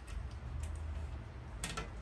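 Glass terrarium's front door clicking lightly against its frame as it is pressed at the bottom: a few small ticks, with a sharper double click near the end, over a low steady hum. The door latches only at the top, so its bottom edge gives when pushed.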